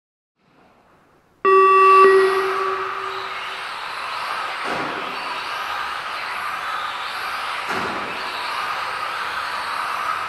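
A loud electronic tone sounds suddenly about a second and a half in and fades over a couple of seconds. It is followed by the steady whine of electric Tamiya TT-02 RC cars' motors and the hiss of their tyres on the hall floor.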